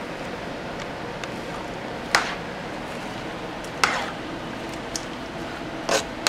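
A slotted spoon stirring wet chopped tomato, onion and cilantro in a pot of homemade salsa, over a steady hiss. The spoon knocks sharply against the pot a few times: once about two seconds in, again near four seconds, and twice at the end.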